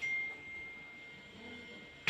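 A single high-pitched ding: one clear tone that starts sharply and rings on, fading slowly over about two seconds.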